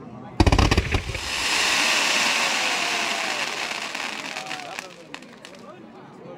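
Fireworks: a rapid volley of loud bangs about half a second in, then a dense crackling hiss from a spray of glittering sparks that swells and dies away over the next few seconds.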